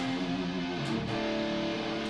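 Schecter Sun Valley electric guitar played through an amp, a chord ringing out and moving to new sustained notes about a second in.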